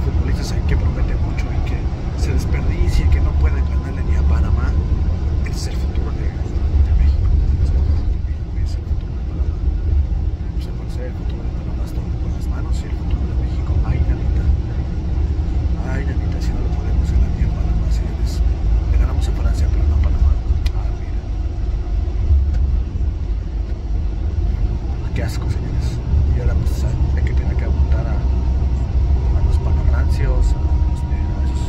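Steady low rumble of a coach bus on the move, heard from inside the passenger cabin, with a man talking over it.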